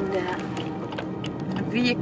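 Road noise inside a moving car's cabin under soft voices, with a few light clicks.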